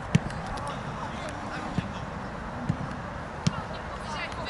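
Outdoor football match sound: faint shouts of players across the pitch, with four short dull thumps, the first and loudest right at the start.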